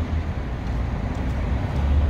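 Steady city street traffic: cars passing on a wide downtown road, a low rumble under an even hiss.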